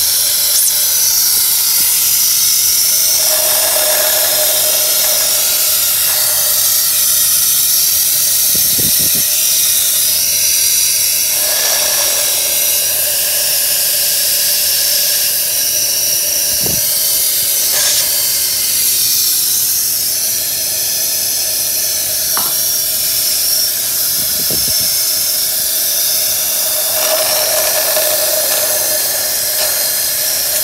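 Vacuum suction unit running and drawing the dissolved carbon-cleaner liquid out of an engine's intake port through a rubber hose. It makes a steady, loud hiss, with a brief change in tone three or four times.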